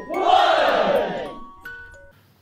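Intro jingle: music with a loud group shout that swells and fades over about a second, then a couple of short steady tones near the end.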